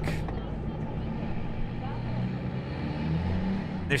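A vehicle engine idling: a steady low hum with faint pitched lines, swelling slightly about three seconds in.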